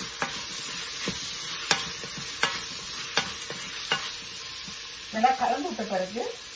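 Vegetables in masala sizzling in the steel inner pot of an electric pressure cooker as a wooden spatula stirs them. The spatula knocks against the pot several times in the first four seconds.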